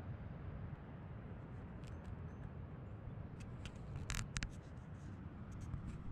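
Handling noise close to the microphone: a handful of sharp clicks and ticks, the loudest a little past four seconds in, over a steady low rumble.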